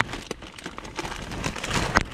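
Plastic bags of bird seed rustling and crinkling as hands rummage in them, with scattered small clicks.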